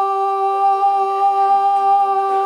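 A singing voice holding one long note at an unchanging pitch, without a break for breath.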